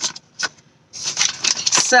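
Foil-lined paper takeout bag crinkling and rustling as a hand reaches in and pulls out a wrapped sandwich: a few short crackles, then a denser stretch of crinkling from about a second in.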